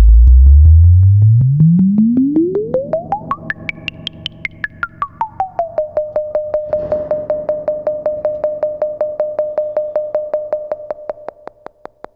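Random*Source Serge Variable Q VCF being pinged by a fast, even stream of triggers, about five a second, its resonant band-pass ringing fed through a spring reverb. As the cutoff knob is turned, the pitch of the pings sweeps up from a deep bass boom to a high whistle about four seconds in, falls back, and settles on a steady mid tone. The pings fade toward the end.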